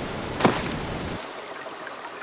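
Rushing waterfall water, cutting off suddenly about a second in and leaving a fainter hiss, with a quick downward-sweeping sound effect about half a second in.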